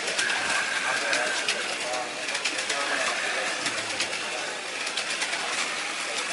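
Slot cars running on a multi-lane track: a steady whirring of small electric motors with light clicks, over people talking.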